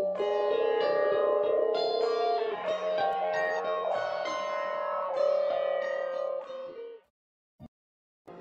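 Background music: a slow plucked-string melody with ringing, sustained notes that fades out about seven seconds in, followed by a brief silence with one short click.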